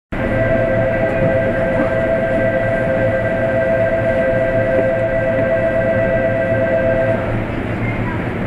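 Station departure signal on the platform: a steady electronic tone on two pitches, held for about seven seconds and then cutting off, the signal that the standing train is about to leave. A low steady hum runs underneath.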